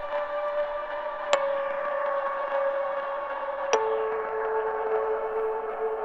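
Plucky synthesized key sound from Reason's Mimic sampler: a sharp thumb-pluck attack over a time-stretched sample with a long, enveloping ringing tail, its reverb baked into the stretched sample rather than added by an effect. A held note is re-struck about a second in, then a lower note is struck a little before four seconds in.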